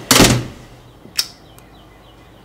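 A loud, noisy burst lasting about half a second, followed a second later by a single sharp knock.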